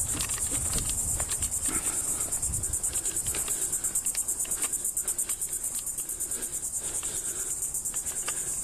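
Insects trilling: a loud, high-pitched, fast and even pulsing chorus that goes on without a break. Beneath it, faint footsteps on a wooden boardwalk.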